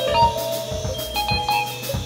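Live band playing: held keyboard and guitar notes over scattered drum hits.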